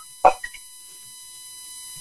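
A faint, steady electronic tone on a telephone line, with overtones above it, in a pause in a caller's speech. A brief vocal sound comes just after the start.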